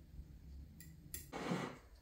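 Faint cutlery handling on a ceramic plate: a table knife working through thin slices of beef, with a couple of light clicks a little under a second in and a short soft scrape after.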